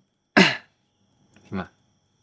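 A man's short throat-clearing cough, sharp and loud, about a third of a second in, followed about a second later by a brief, quieter voiced sound.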